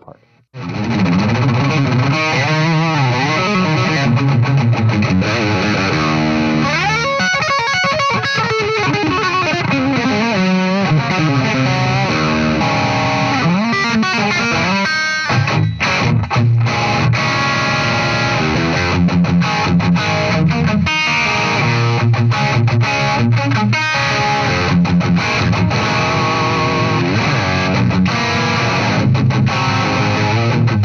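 Electric guitar played through a Friedman Pink Taco (PT-20), a hand-wired 20-watt EL84-powered tube amp head, with an overdriven tone. A continuous riff starts just after a brief silence, with sliding notes a few seconds in and a short break about halfway.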